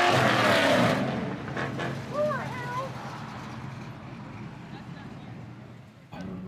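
A muscle car accelerating hard away from the kerb, its engine note climbing in pitch and loudest in the first second, then fading as the car pulls away down the road.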